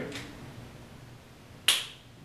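A single sharp click, with a brief ringing tail, about three-quarters of the way through; otherwise quiet room sound.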